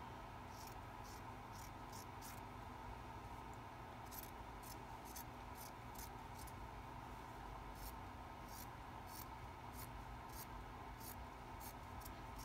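Scissors snipping through cloth: a string of faint, crisp snips, about two or three a second, pausing briefly a few seconds in.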